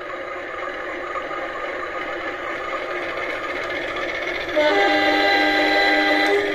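Sound-effect controller for a model train playing a diesel locomotive engine sound, a steady rumble, as the HO-scale CC201 model pulls away. About four and a half seconds in, a louder multi-tone locomotive horn blast sounds and holds to the end.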